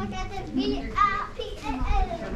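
Children's voices: kids talking and calling out among other people in a crowd of visitors.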